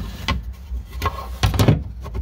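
A few irregular knocks and clacks as a loose carpeted interior panel in a 1969 Corvette is pushed and moved by hand, the loudest cluster about one and a half seconds in. The panel shifts and knocks because its bolt-down hardware is missing.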